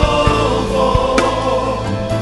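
Gospel song: a choir singing a long held line over full instrumental backing.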